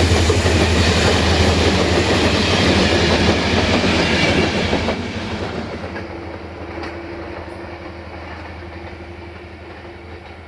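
Passenger coaches rolling past at speed, their wheels clattering over the rail joints. The sound is loud for about the first five seconds, then fades steadily as the train draws away.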